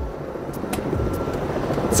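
Steady low rumble of city street traffic, swelling during the first second and then holding.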